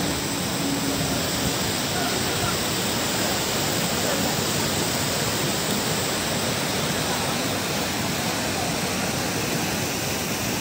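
Water rushing steadily over a concrete weir and down its spillway channel, a constant, even rush with no breaks.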